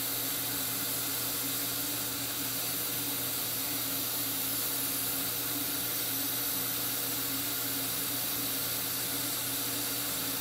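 Dental suction drawing air at the surgical site, a steady hiss with a low hum under it.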